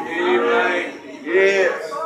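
A man singing two long, drawn-out wordless notes. The second is louder and rises then falls in pitch.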